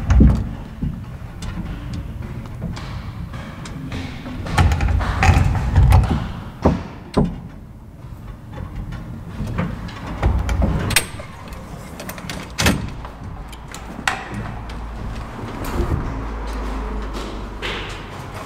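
A vintage gated traction elevator car travelling in its shaft: a low rumble that swells several times, with scattered sharp clicks and knocks from the car and its folding metal gate.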